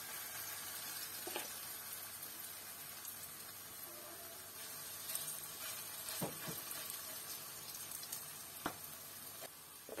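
Grated-potato pancakes sizzling steadily in hot oil in a frying pan as batter is laid in, with a few light clicks a few times along the way.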